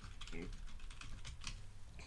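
Computer keyboard typing: a run of faint, quick key clicks as a search is typed in.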